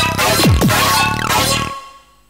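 Live-coded electronic music from TidalCycles driving a modular synthesizer: a dense, glitchy texture with two steep downward pitch sweeps about half a second in, fading away near the end.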